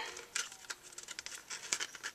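Faint rustling of red cardstock being folded over into a paper cone, with a few light crinkles as it is handled.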